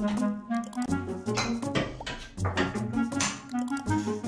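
Background music with changing melodic notes and a beat.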